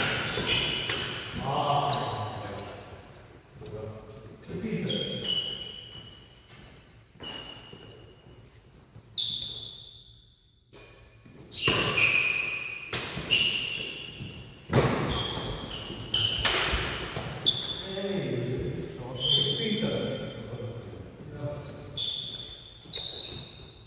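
Badminton rally: rackets striking a shuttlecock in a series of sharp hits, with sports shoes squeaking on the wooden hall floor and echoing in the large hall.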